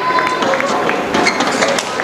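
Badminton rally: a few sharp racket strikes on the shuttlecock and brief shoe squeaks on the court floor, over arena crowd noise.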